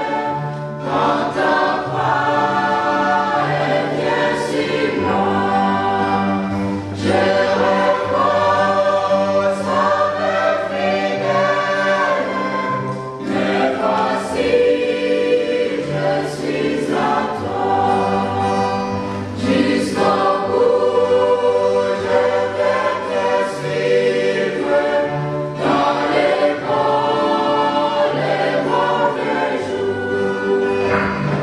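Mixed choir of men's and women's voices singing a hymn in harmony, with steady low bass notes under the higher parts.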